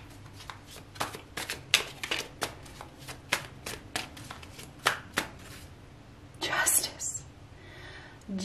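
Tarot deck being shuffled by hand: a run of quick, irregular card taps and slaps, a few a second, that stops about five seconds in. A short swish of sliding cards follows near the end.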